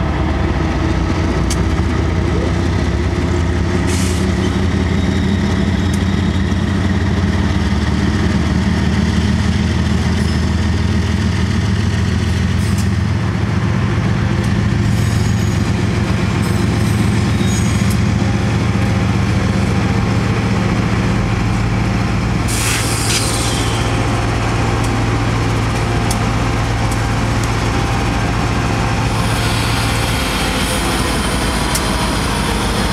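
Diesel freight locomotives, including a BNSF GE ES44C4, rolling slowly past at close range, their engines running with a steady low drone. A brief sharp hiss comes about two-thirds of the way through.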